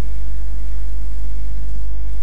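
A steady low-pitched hum or rumble in the recording, unchanging and with nothing else over it.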